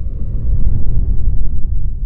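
Deep, loud rumbling sound effect, the low sustained tail of a cinematic logo sting, carrying on steadily through the end card.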